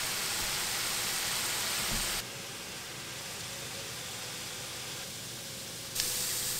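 Diced onion, celery and carrot sizzling in oil in a nonstick skillet, a steady hiss that drops abruptly to a softer level about two seconds in.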